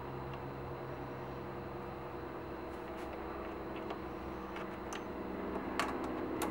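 Steady low hum of workshop room tone, with a few faint clicks as small parts are handled on a PVC horn body held in a vise. There is a sharper click near the end.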